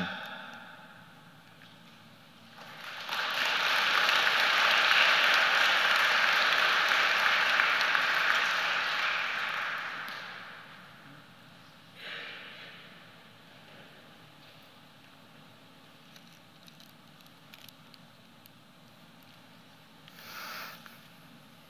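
Audience applauding in a large room, building up a few seconds in and dying away after about eight seconds, with a brief second spatter of noise a little later.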